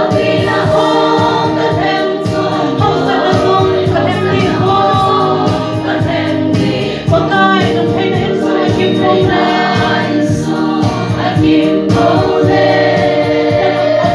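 A congregation singing a worship song together, many voices at once, loud and sustained.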